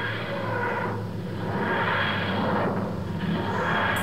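TARDIS materialisation sound effect: a grinding whoosh that swells and fades in repeated waves, about one every second and a half.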